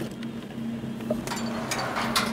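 Steady low hum of idling vehicle engines, with a few sharp clicks and a short hiss in the second half.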